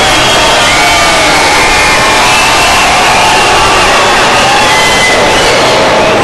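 Large arena crowd cheering and shouting, many voices at once at a steady, loud level.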